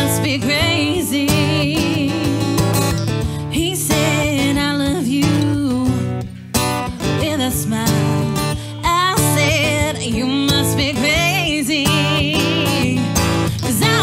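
Woman singing a country song live, accompanying herself on a strummed acoustic guitar, with a brief drop in the sound about halfway through.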